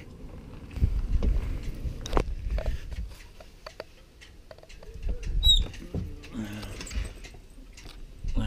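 Irregular knocks, clicks and rustling from someone moving around and climbing onto a fibreglass sailboat on stands, with low bumps from handling the camera. A brief high squeak sounds about five and a half seconds in.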